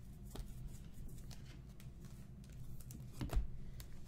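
Trading cards being flipped through by hand: faint scattered clicks and slides of card on card, with one sharper click a little after three seconds, over a faint steady low hum.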